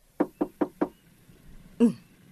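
Four quick, evenly spaced knocks on a door, then a short call from a voice near the end.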